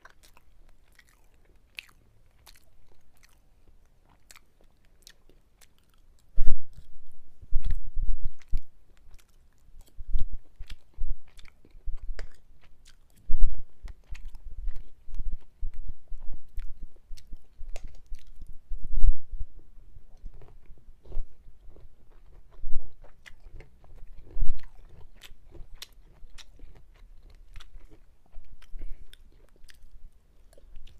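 A person chewing mouthfuls of lasagna up close, in an irregular run of mouth clicks and soft low thuds. The chewing starts about six seconds in, after a near-quiet stretch.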